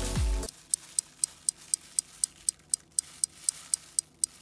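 Electronic background music cuts off about half a second in, and a clock starts ticking: sharp high ticks about four times a second, an edited-in sound effect for a puzzled pause.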